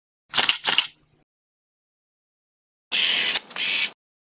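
Camera shutter sound effects from an SLR-style intro: a quick double click under a second in, then near the end a louder, hissing burst in two parts, each about half a second long.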